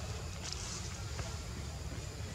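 Low, unsteady rumble of wind buffeting the microphone, with a faint hiss above it.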